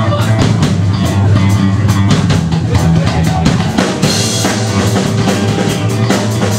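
Rock band playing live: a drum kit keeps a steady beat under electric guitar in an instrumental passage without singing, loud and dense as heard from within a club audience.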